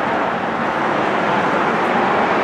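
Steady road traffic noise, an even rush of passing vehicles with no distinct events.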